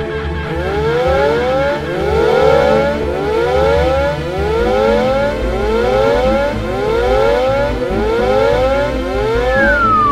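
A chorus of cartoon hens, many overlapping calls that each rise in pitch, repeated and staggered, over a low steady machine hum. Near the end a single descending whistle as the hen falls.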